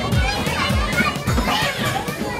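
A group of young children shouting and chattering excitedly over music with a steady thumping beat.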